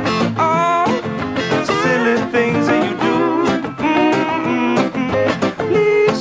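Live acoustic guitar strumming under a lap slide guitar playing a gliding, wavering melody, in an instrumental break of the song.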